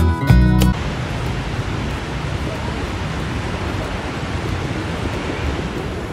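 Acoustic guitar music that cuts off suddenly under a second in, followed by a steady rushing noise of wind and surf on a beach.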